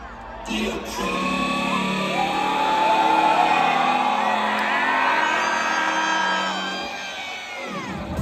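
Arena crowd screaming and whooping over a break in an EDM set with the bass dropped out; the cheering swells toward the middle and eases near the end.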